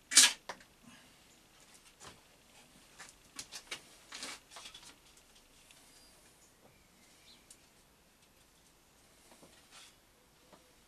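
Knocks and clicks from hands working on a round column mill drill during setup: one loud knock right at the start, a scatter of small clicks and rattles over the next few seconds, then only faint ticks.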